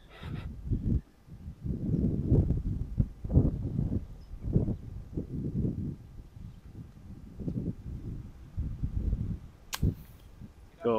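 Gusty low rumble of wind on the microphone, then near the end one sharp click of a golf club striking the ball on a short chip shot.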